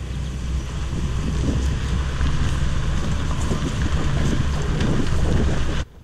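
Wind buffeting the microphone over a low vehicle rumble, growing steadily louder, then cutting off suddenly near the end.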